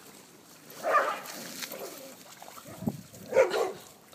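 A dog barks twice, once about a second in and again near the end.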